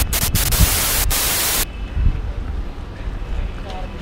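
TV-static hiss sound effect, broken by a few brief dropouts, cutting off suddenly about one and a half seconds in. After it, a low wind rumble on the microphone.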